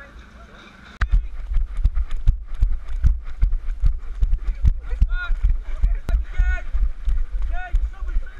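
Jogging footfalls jolting a head-mounted camera: low thuds about three times a second with a low rumble, starting about a second in. From about five seconds in, short rising-and-falling vocal sounds from the runners come over the thuds.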